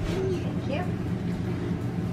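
A steady low machine hum, with a few brief, faint voice sounds over it.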